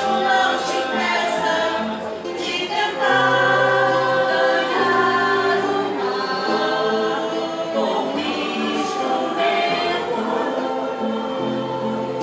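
A choir singing, several voices in harmony holding long notes that change together.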